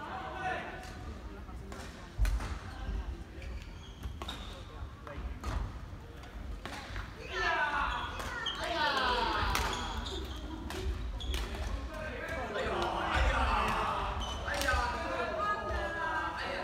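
Badminton rally in a large sports hall: rackets striking the shuttlecock in sharp pops, sneakers squeaking on the wooden court, and voices echoing, with the squeaks and voices busiest about halfway through and again near the end.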